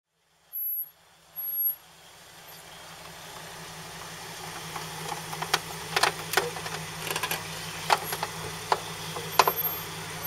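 Jeep Wrangler engine running at low revs, growing louder as it crawls up a loose dirt bank, with frequent sharp clicks and knocks from the tyres throwing dirt and stones. Two short high-pitched blips near the start.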